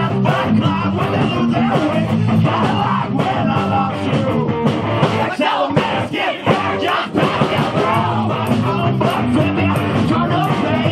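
Live punk rock band playing loudly: electric guitar and drums driving steadily, with a brief drop-out in the low end about five and a half seconds in before the full band comes back.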